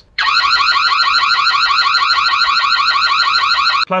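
Built-in alarm siren of a floodlight security camera sounding: a very loud electronic warble of fast, repeated rising sweeps. It starts just after the beginning and cuts off suddenly shortly before the end.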